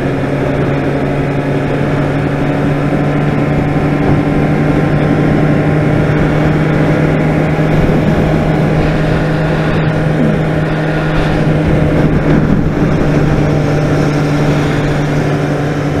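Honda CBR600RR's inline-four engine running at a steady cruising speed, one even engine note, with wind rushing over the microphone.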